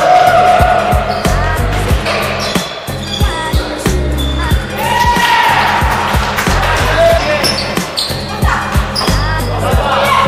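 Background music with a steady beat and heavy bass, over a basketball game in a gym: a ball bouncing on the wooden court floor.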